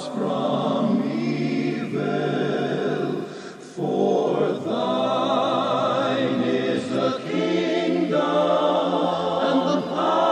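Gospel singing from a cassette recording: a female lead voice with backing singers holding long notes with vibrato. The voices drop away briefly about three and a half seconds in, then swell again.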